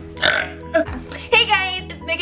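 A girl's voice making a short noisy sound and then a wavering, drawn-out non-speech vocal sound, over steady background music.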